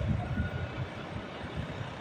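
Low, uneven rumble of outdoor city background noise, with a faint thin high tone now and then.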